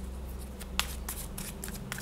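A tarot deck being shuffled and handled by hand while the next card is drawn: a run of soft, irregularly spaced card snaps and slides.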